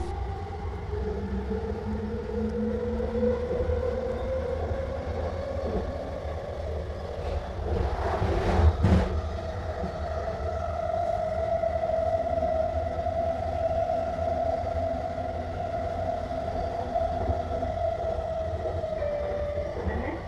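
Millennium Line SkyTrain metro train running, heard from on board: the whine of its linear induction motors climbs in pitch as the train accelerates over the first dozen seconds and then holds steady over a low track rumble. A brief loud clatter comes about eight seconds in.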